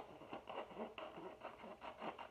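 Scissors cutting a strip from a sheet of paper: a run of short, faint, irregular snips with the paper rustling.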